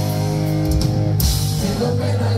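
Punk rock band playing live: electric guitar, bass and drums, with a sustained chord ringing for about the first second, then a cymbal crash.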